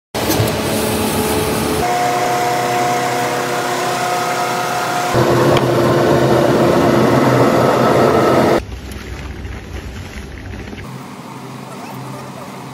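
Plastic-shoe moulding machinery running with a steady drone and hum. The sound changes abruptly several times and drops much quieter about two-thirds of the way in.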